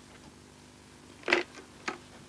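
Corded telephone handset lifted off its base: two sharp plastic clicks, the first and louder one just past halfway, the second about half a second later.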